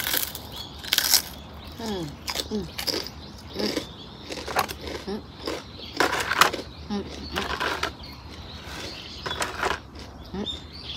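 Close-up eating sounds: a piece of grilled rice cracker being crunched and chewed in short bursts, loudest about six seconds in. Small birds chirp faintly in the background.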